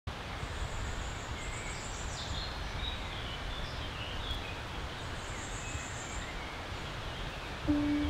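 Outdoor nature ambience: a steady low rumble with birds chirping and calling faintly in short high notes. A steady musical note comes in near the end.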